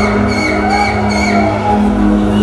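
Live band music from the stage: a steady held low note under short, high-pitched sliding notes that repeat about every half second.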